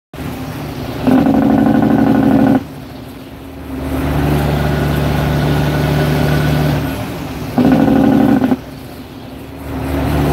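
Truck cab noise while driving: a steady engine drone. Two loud, steady-pitched blasts with several stacked tones cut across it, one of about a second and a half near the start and a shorter one about eight seconds in.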